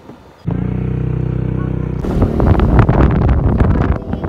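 Motor scooter engine starting about half a second in and running steadily, then the scooter pulls away about two seconds in, its engine under throttle mixed with wind buffeting the microphone.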